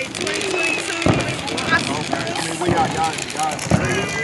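Voices calling out over a crackle of scattered firework pops and bangs.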